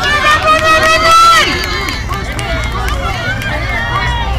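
High-pitched yelling and cheering from a game crowd, with one loud drawn-out shout lasting about a second and a half at the start, then chatter and calls.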